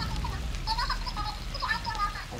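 Faint, distant voice in short broken phrases, over a steady low background rumble.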